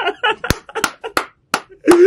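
A man laughing, broken by five sharp hand strikes in an even run of about three a second, the first the loudest.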